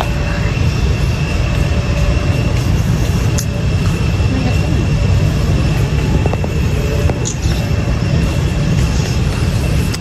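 Steady low rumble of a supermarket aisle's background noise, with a faint high-pitched whine running through it and a few light clicks.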